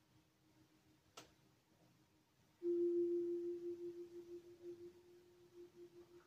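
A single steady ringing tone comes in suddenly about two and a half seconds in and slowly fades with a slight pulsing, after a faint click about a second in.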